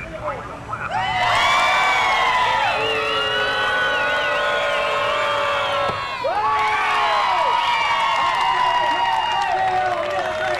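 A crowd of spectators, adults and children, cheering and yelling in long held shouts to cheer on the axe throwers. The cheering starts about a second in, breaks off briefly around six seconds, then swells again.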